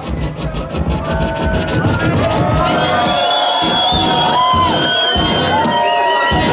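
Live hip-hop beat played loud through a club sound system from a DJ's turntables, with a crowd cheering over it. About two and a half seconds in, held melody notes come in over the beat.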